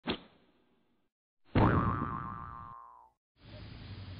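Intro sound effects: a short sharp hit, then about a second and a half in a louder cartoon boing whose pitch slides down as it fades over about a second and a half. Near the end a steady background hiss of the outdoor recording begins.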